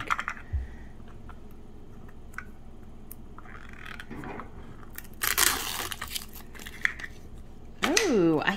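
A miniature toy rattling briefly inside a small plastic Mini Brands capsule as it is shaken. About five seconds in comes a loud tearing as the sticker seal is peeled off the capsule.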